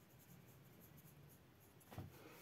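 Very faint scratchy strokes of a fine paintbrush on watercolour paper, with one soft tap just before the end.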